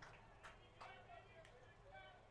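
Near silence: faint ballpark ambience with distant voices and a few soft clicks.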